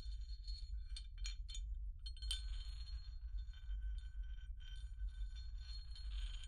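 Small hard objects, glass or metal, clinking lightly: a few quick clicks about a second in, then a louder clink a little past two seconds that rings on in several clear tones, and more ringing clinks near the end. A steady low rumble runs underneath.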